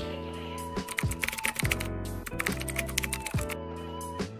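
Computer keyboard typing sound effect: a quick run of clicks starting about a second in and stopping shortly before the end, over background music with a steady bass line.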